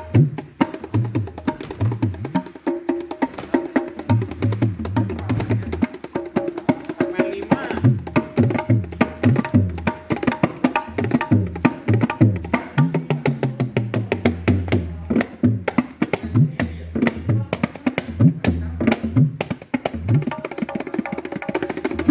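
A set of gendang hand drums played with bare hands in a fast, busy rhythm. Sharp high slaps alternate with deep bass notes, some of which slide up and down in pitch.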